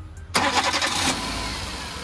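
Chevrolet Beat's 1.2-litre petrol engine starting about a third of a second in: a sudden loud burst as it catches, easing within about a second into a steady idle.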